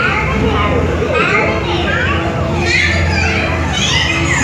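Many high-pitched voices chattering and squealing at once, their pitch sliding up and down, over a steady low hum.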